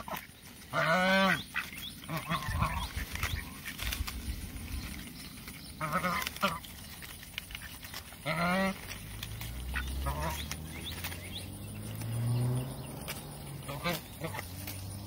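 Pekin ducks quacking while they feed: a few short calls, about a second in, around six seconds and around eight and a half seconds, with fainter ones later.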